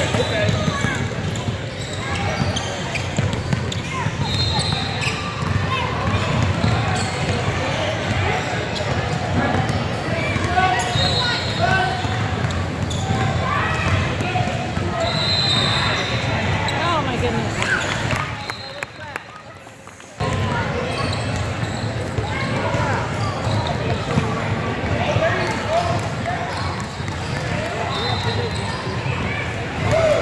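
Basketball game in a large gym: spectators' and players' voices echo in the hall, with a basketball bouncing on the hardwood court. The sound drops away for about a second and a half about two-thirds of the way through, then comes back suddenly.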